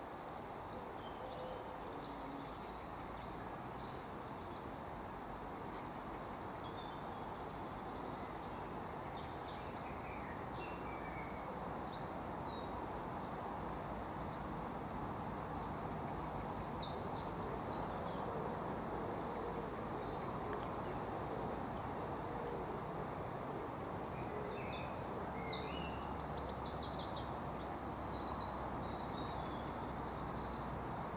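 Outdoor ambience of small birds chirping over a steady background hum of road traffic. The chirps come in busier clusters about halfway through and again near the end.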